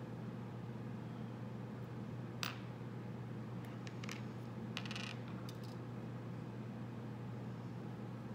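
Small metal hardware pieces (nuts and bolts) clicking and clinking as they are handled and set down on a wooden table: one sharp click about two and a half seconds in and a short cluster of clinks near five seconds, over a steady low hum.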